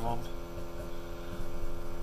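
A steady low hum made of several even tones, heard inside a vehicle cab.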